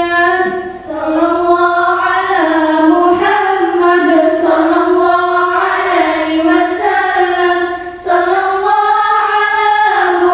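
Young schoolgirls singing a sholawat, an Islamic devotional song praising the Prophet, together as a group. The singing is continuous, with short breath pauses about a second in and near eight seconds.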